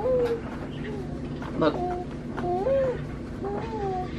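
A six-month-old baby vocalizing in short sing-song coos and whines that rise and fall in pitch, several times.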